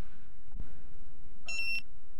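Infinite Peripherals laser barcode scanner giving one short, high beep about a second and a half in: the confirmation of a successful barcode read.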